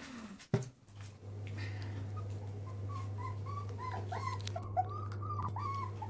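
Poodle puppies whimpering in a run of short, high squeaky cries, starting about two seconds in.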